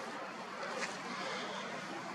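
Steady outdoor background noise: an even hiss with a faint low hum underneath and no distinct events.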